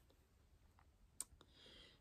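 Near silence: room tone, with one faint click a little after a second in and a soft hiss near the end.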